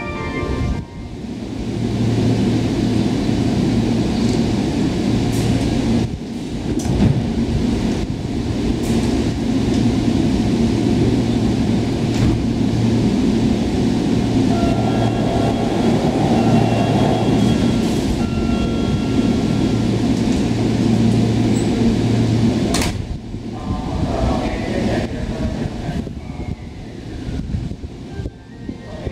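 Commuter train standing at a station platform, its equipment giving a steady low hum, with a higher whine for a few seconds midway. A sharp knock comes about 23 seconds in, after which the sound drops.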